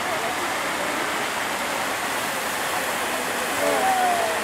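Fountain jets and a stone cascade splashing into a pool: a steady, even rush of falling and spraying water.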